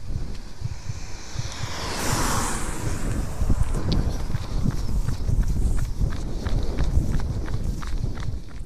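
A runner's footfalls on an asphalt road, picked up by a camera carried on the run, with wind on the microphone; a gust of wind hiss swells about two seconds in.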